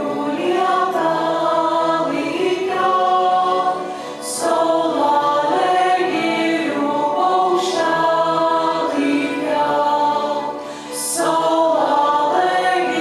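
Choir singing a Lithuanian folk-style song in long, sustained phrases, with short breaks between phrases about four seconds in and again near the end.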